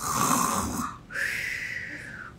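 A woman imitating snoring: two mock snores in a row, the second one longer.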